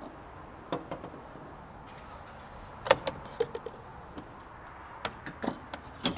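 Scattered clicks and knocks of handling at a gas pump and the car's fuel filler, over a steady background hum; the sharpest knock comes about three seconds in.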